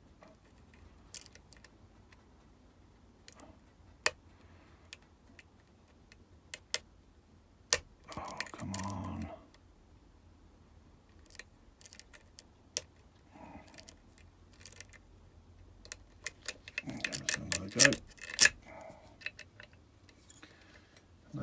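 Lock pick and tension wrench working inside a 5-pin Medeco cylinder: scattered small metallic clicks as the pins are lifted and turned, with a quicker run of louder clicks near the end.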